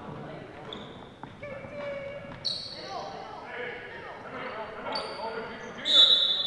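Basketball bouncing on a hardwood gym floor, with a few short high squeaks and voices echoing in the hall. Right at the end a referee's whistle blows loudly, stopping play for a timeout.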